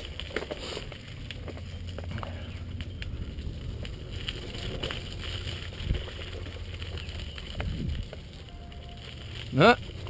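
Mountain bike riding down a dirt trail: a steady low rumble with scattered small clicks and rattles from the tyres and bike, and a sharper knock about six seconds in.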